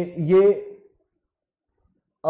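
A man's voice reading out a quiz question, breaking off about a second in, followed by silence.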